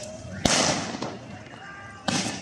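A single sharp bang about half a second in, followed by a rushing hiss that fades over about half a second: a shot fired by riot police in a street clash with protesters, amid shouting voices.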